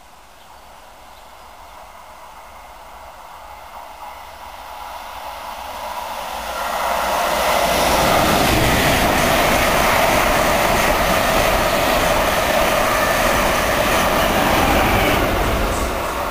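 Mark 3 passenger train, led by its driving van trailer, running through the station at speed: the rumble and rush of wheels on rail builds over the first several seconds, holds loud for about seven seconds as the coaches pass, then starts to fade near the end.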